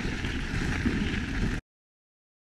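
Mountain bike rolling over a dirt singletrack, tyre and trail rumble mixed with wind on the camera's microphone; the sound cuts off suddenly about a second and a half in.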